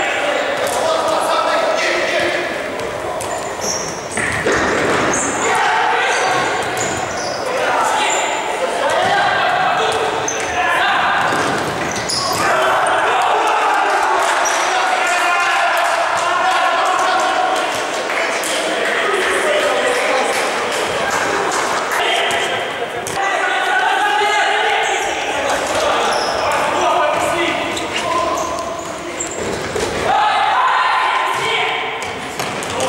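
Futsal game sound in a large sports hall: players' shouts and calls, reverberant and not clear enough to make out, with the ball being kicked and struck on the court and many short, high-pitched shoe squeaks on the hard floor.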